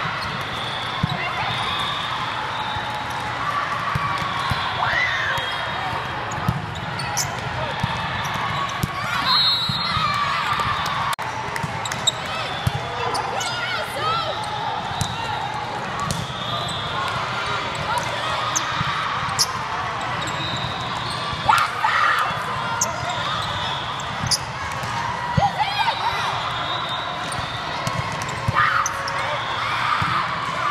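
Volleyball being played in a large hall: scattered sharp slaps of the ball being hit and landing, over constant chatter and calls from players and spectators.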